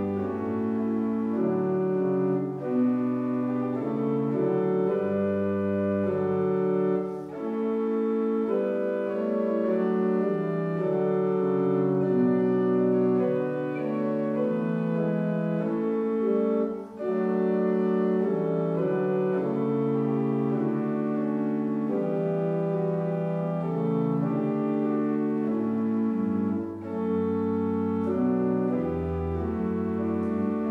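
Harris pipe organ playing a hymn on the Prestant 8' stop, the organ's principal foundation stop, in sustained chords. The music dips briefly between phrases about 3, 7, 17 and 27 seconds in.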